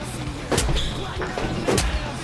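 Two sharp punch hits of a hand-to-hand fistfight, about a second apart, with short grunts between them.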